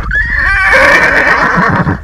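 A mare whinnying loudly close by: one long, quavering call lasting almost two seconds.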